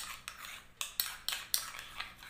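A spoon clinking and scraping against a bowl while stirring a face-pack paste, in a quick, uneven run of short taps.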